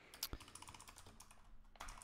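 Computer keyboard being typed on: a quick, uneven run of faint key clicks, a little louder near the end.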